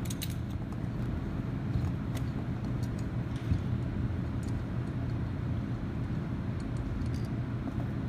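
A steady low background hum, with a few faint small metallic clicks from an Allen bit on a flexible-shaft driver backing screws out of a brass valve cover plate and the loose steel screws being set down.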